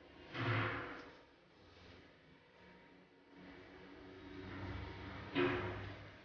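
Hands pressing and sealing soft rice-flour dough around coconut filling over a plastic bowl, with two short rubbing or handling noises, one about half a second in and one near the end, against quiet room tone.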